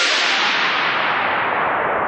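Synthesized white-noise sweep in a hardgroove techno track, with no beat under it: a loud, even hiss that grows steadily duller as its top end is filtered down, fading only slowly.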